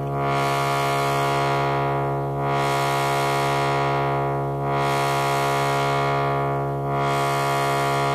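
Sawtooth tone from a Buchla 258V oscillator, held on one steady low pitch, played through the A section of a Buchla 291e triple morphing filter whose frequency is swept by a 281e function generator. The tone brightens and darkens in smooth swells about every two seconds as the filter opens and closes.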